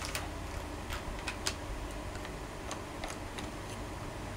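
Scattered light clicks and taps, irregular, from small makeup containers and tools being handled on a table, over a faint low hum.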